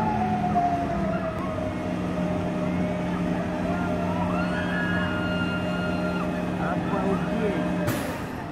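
Drive machinery of a tower thrill ride running: a steady low hum with higher whining tones that slide slowly in pitch.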